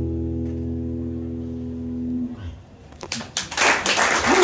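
The closing chord of a song on a guitar rings out steadily and fades away a little over two seconds in. A few claps follow, and audience applause breaks out near the end.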